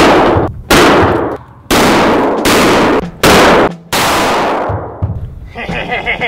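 Six gunshots in steady succession, roughly one every three-quarters of a second, each loud crack trailing off in a long echo.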